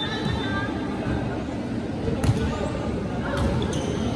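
Spectators chattering in a gym hall, with one sharp smack of a volleyball being struck a little past halfway, followed by a couple of lighter knocks.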